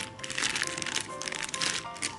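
Clear plastic zip bags of small kit pieces crinkling as they are handled, in irregular bursts over soft background music.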